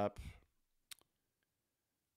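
Two quick, sharp clicks of a computer mouse about a second in, a tenth of a second apart, after the last word of speech.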